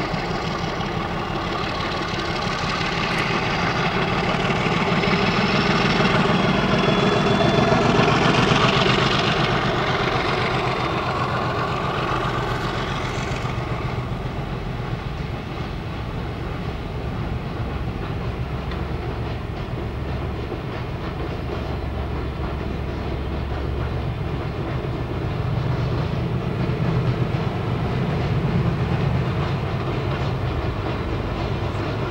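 Two MLW MX627 diesel-electric locomotives working together under load, their engines droning loudest about eight seconds in as they pass. The engine sound then fades, and from about fourteen seconds in a long string of ballast wagons rolls by with a steady low rumble from the wheels on the rails.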